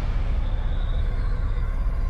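A deep, steady rumble from a space documentary's sound design for a black hole, with faint held tones above it.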